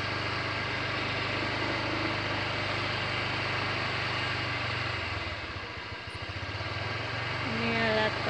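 An engine idling steadily, a constant low hum that fades briefly about five seconds in and then returns.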